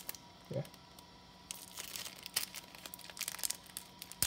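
Foil booster pack wrapper crinkling and crackling in the hands as it is torn open, starting about a second and a half in and going on as a dense run of rapid crackles.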